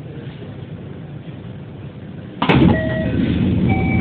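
JR 207 series commuter train standing at a platform with a low steady hum. About two and a half seconds in, a sudden loud burst of door noise begins as the doors start to close, with short electronic beeps at several pitches.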